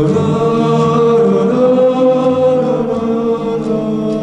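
Song with several voices holding long sustained notes, changing pitch once partway through.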